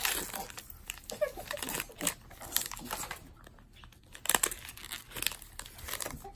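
Foil wrapper of an Allen & Ginter baseball card pack crinkling and tearing as it is pulled open by hand, in irregular crackles.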